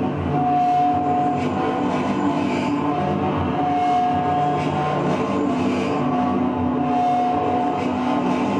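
Live experimental drone music played on electronics and effects pedals: dense, sustained low tones with a higher tone that comes and goes every second or two.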